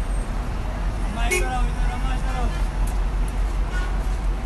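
Steady low rumble of idling coach buses and street traffic. A voice calls out briefly just over a second in.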